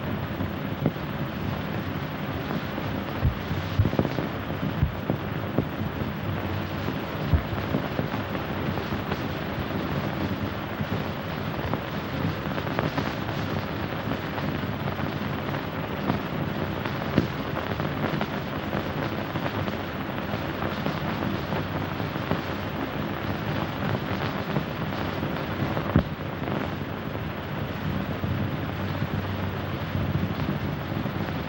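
Steady hiss with scattered crackles and pops, the surface noise of an old optical film soundtrack, with no dialogue over it.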